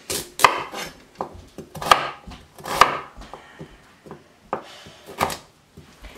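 Kitchen knife chopping firm parsley root on a wooden cutting board: an irregular series of sharp knocks as the blade cuts through and hits the board, the loudest about half a second, two and three seconds in.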